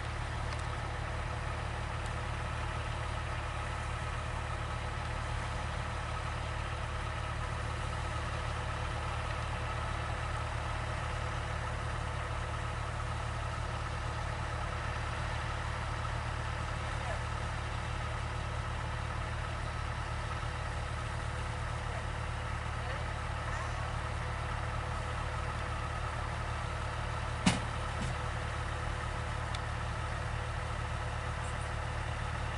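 A vehicle engine idling steadily, with one sharp click near the end.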